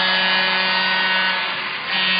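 Arena crowd cheering after a goal, a steady roar of many voices with a constant low hum underneath. It dips briefly near the end.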